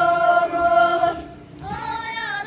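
A group of voices singing a Tibetan circle-dance song in unison: one long held note that fades after about a second, then a new phrase begins near the end.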